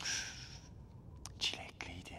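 A man's breathy whisper, then a few short soft clicks about a second in: lip smacks as he kisses his fingertips.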